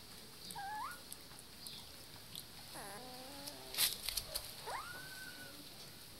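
Puppies whining as they tussle. There are three short whines: a rising one about half a second in, a lower, longer one around three seconds, and one near five seconds that rises and then holds. A sharp click just before four seconds is the loudest sound.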